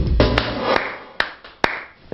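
Music fades out, followed by a few slow, evenly spaced hand claps from a single person, about half a second apart.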